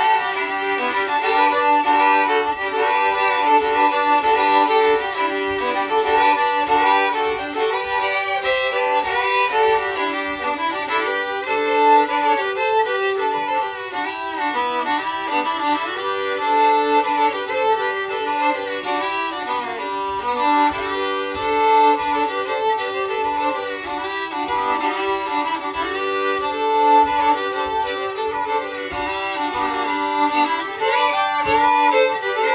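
Two fiddles playing a Cajun fiddle tune together, bowed without a break.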